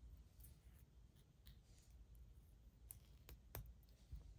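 Near silence, with a few faint clicks of a sewing needle and beads being handled, mostly in the second half.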